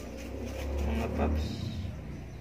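A man's brief hesitant "uh" over a low rumble that lasts about a second.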